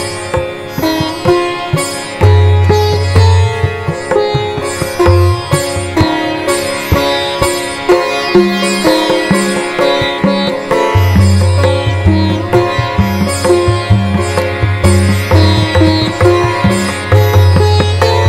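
Background music: a quick run of plucked string notes over sustained low bass notes.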